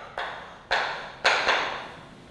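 Chalk writing on a chalkboard: four sharp strokes, each starting with a tap and fading quickly, the last two close together in the second half.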